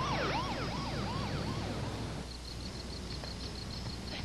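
Fire truck siren yelping, its pitch sweeping up and down about two to three times a second, fading out a little past halfway, with a low steady rumble underneath.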